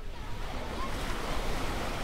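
Ocean surf sound effect: a steady wash of breaking waves.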